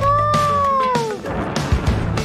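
A cat meows once, a long drawn-out meow lasting about a second that falls in pitch at the end, over background guitar music.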